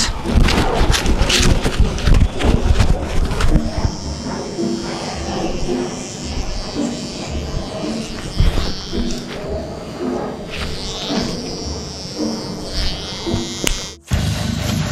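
Electric hair clippers buzzing steadily as they cut a man's hair, from about four seconds in until just before the end, over background music.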